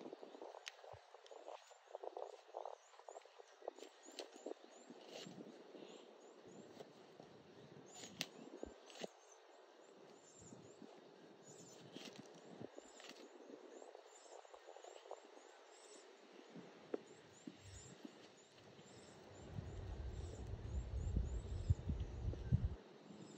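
Wooden cooking stick stirring and pressing stiff ugali (thick maize-meal porridge) in an aluminium pot, with faint irregular scraping and a few sharp knocks against the pot. A low rumble comes in near the end.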